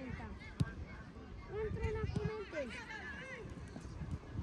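Faint voices of several people calling out at a distance, with one sharp knock about half a second in.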